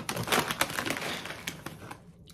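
Plastic snack bag crinkling as a hand rummages inside it for a pretzel shell: a dense run of crackles that tapers off toward the end.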